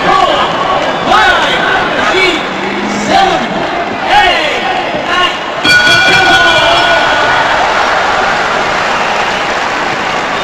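Arena crowd noise with excited shouting voices after a knockout. About six seconds in, a steady horn-like tone sounds for about two seconds over the crowd, which then slowly fades.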